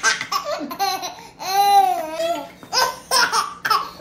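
A baby laughing hard in repeated high-pitched bursts, with one long drawn-out laugh about halfway through.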